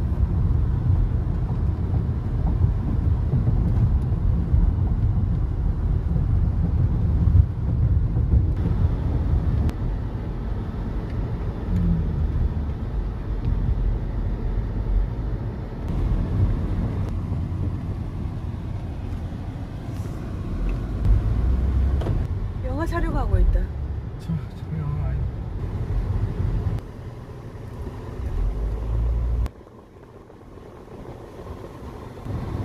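Car driving on city streets, heard from inside the cabin: a steady low rumble of engine and road noise. The level steps abruptly a few times, and a short pitched sound that bends up and down comes about three quarters of the way through.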